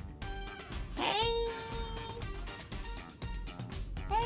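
Ragdoll cat meowing once about a second in, a long call that rises and then holds steady, over background music. The cat is stuck on a top bunk and calling to be let down.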